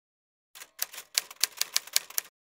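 Typewriter keys striking in quick, uneven succession, about ten keystrokes starting about half a second in.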